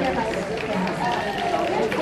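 Indistinct voices of several people talking, a steady background chatter with no clear words.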